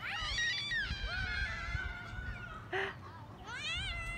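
Children calling out from a distance in long, high, wavering cries, with a short cry a little after the middle and a rising cry near the end. A low rumble of wind on the microphone runs underneath.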